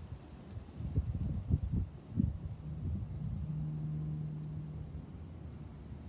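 Gusty low rumble of wind buffeting a phone microphone outdoors, easing after about two seconds. A steady low hum comes in for a couple of seconds around the middle.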